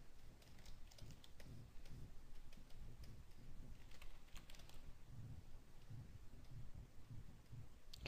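Computer keyboard keys clicking faintly and irregularly over a low steady hum.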